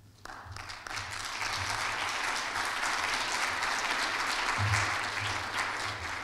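Small audience clapping, starting just after the start, swelling over the first second, holding steady, then easing off near the end.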